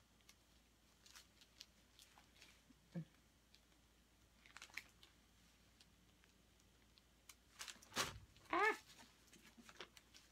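Quiet handling of a stretched canvas being tilted by gloved hands: scattered faint clicks and taps, with a short knock about three seconds in and a louder thump about eight seconds in, followed at once by a brief 'ah'.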